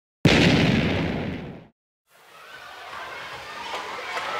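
A sudden loud boom, like an explosion sound effect, that dies away over about a second and a half and is cut off. After a moment of silence, a quieter sound with a few steady tones fades in.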